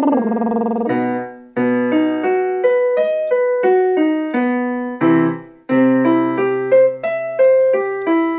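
Electronic keyboard playing a rising-and-falling arpeggio over a held low note, twice, giving the pitch for a lip-trill range exercise. In the first second the tail of a sung lip trill glides down and stops.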